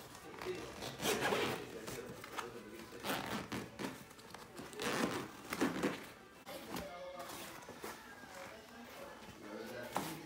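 Fabric rustling and rasping strokes, repeated every second or two, as the cloth apron cover is unfastened and pulled off a Bugaboo Fox pram bassinet.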